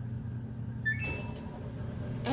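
Front-loading washing machine's control panel beeping as a button is pressed: a quick rising run of electronic tones about a second in, ending on one short held beep, over a steady low hum.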